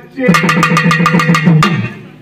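Pambai drums beaten with sticks in a rapid, even roll of about eight strokes a second, with a low pitched ring under the strokes, stopping about a second and a half in.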